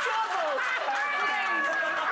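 Several women talking over one another and laughing at once, cross-talk too tangled for single words.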